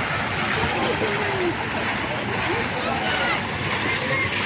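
Steady rush of water from a splash-pool mushroom fountain, with the distant chatter and shouts of children in the pool around it.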